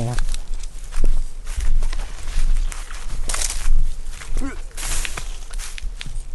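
Dry straw and leaf mulch rustling and crackling as it is handled and shifted close by, in irregular bursts, with two louder sweeps past the middle.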